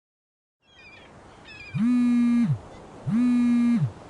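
Soft beach ambience with a few bird cries, then a mobile phone buzzing twice. Each buzz lasts under a second and glides up at the start and down at the end: an incoming call.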